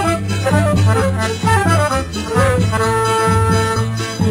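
Accordion playing an instrumental passage of a northeastern Brazilian song over a steady bass accompaniment: runs of quick notes, then a held chord near the end.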